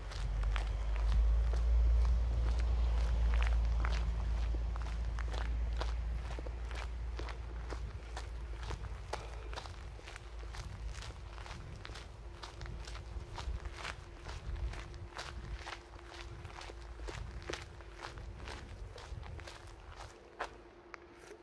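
Footsteps of a person walking at a steady pace on a woodland dirt path, heard through a handheld phone's microphone, with a low rumble that is loudest in the first few seconds. A faint steady hum comes in about halfway through.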